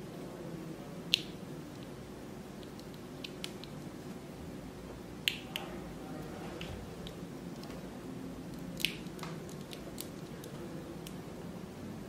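3D-printed resin model parts clicking as ball joints are pushed and wiggled into their sockets: three sharp snaps about a second, five seconds and nine seconds in, with a few fainter ticks of handling between them.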